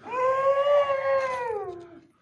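A man's long, high-pitched whining wail in a puppy-like whimper, held for about two seconds and falling in pitch near the end.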